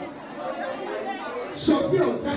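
Many voices talking over one another: a congregation praying aloud all at once, with one voice rising louder near the end.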